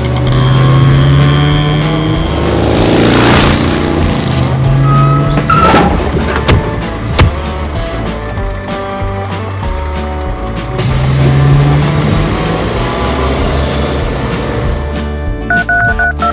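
Car engine sound effects: vehicles driving by, rising and falling, and a car pulling up. There is a sharp click about seven seconds in, over background music.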